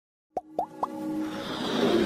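Three quick cartoon-style pops about a quarter second apart, each a little higher in pitch, then a swelling electronic music riser building up: the sound effects of an animated logo intro.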